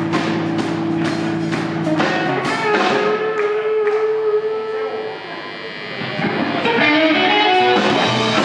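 Live band playing electric guitars over a drum kit, with a guitar holding long sustained notes. The band drops quieter about five seconds in, then builds back to full volume.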